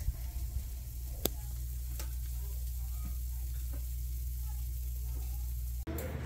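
Oven running with a pie baking inside: a steady low hum under a faint hiss, with a sharp tick just over a second in and a fainter one about a second later.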